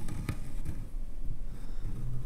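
Low, steady workshop rumble with a few faint light taps near the start.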